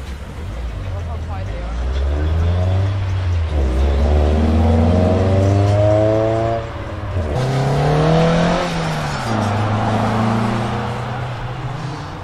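Sports coupe engine accelerating hard from a pull-out, its note rising steadily through one gear. About seven seconds in there is a brief dip at the upshift, then a higher pull that falls away as the car lifts off and drives off.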